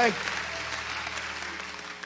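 Congregation applauding and clapping, dying away gradually, over a steady low hum.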